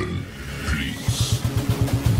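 Yamaha Sniper 150's single-cylinder four-stroke engine idling, a fast, even low pulse coming in about a second in.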